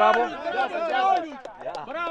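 Speech only: men talking over one another, one of them saying "bravo" as it begins.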